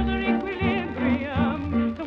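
Early-1930s British dance band on a 78 rpm record playing a fox trot instrumental passage. A wavering, vibrato lead melody runs over a steady bass beat about twice a second.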